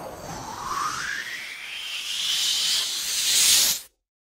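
Cartoon sound effect of a swirling vortex sucking things in: a hissing whoosh that rises steadily in pitch and grows louder, then cuts off suddenly near the end.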